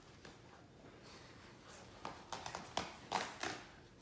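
Great Danes mouthing and tugging at a shredded blanket: faint at first, then from about halfway a cluster of short rustling and clicking sounds.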